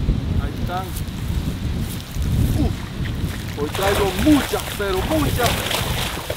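Wind rumbling on the microphone, with a few short pitched voice-like calls in the second half, the loudest a little past the middle.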